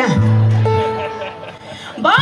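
Venezuelan llanera band playing a short instrumental gap between sung lines: cuatros strumming over a bass. A sung note ends at the start, and the music dips quieter toward the end.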